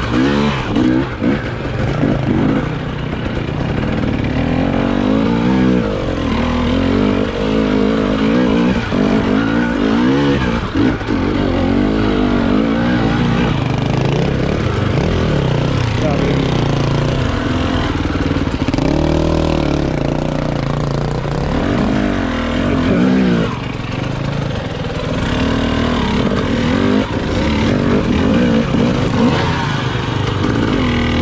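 Husqvarna TE 300i two-stroke enduro motorcycle engine revving up and down continually as it is ridden over rough, rocky single track, its pitch rising and falling every second or two without a break.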